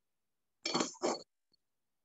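Two quick clinking rattles of small glass seed beads being handled, with a faint tick after them.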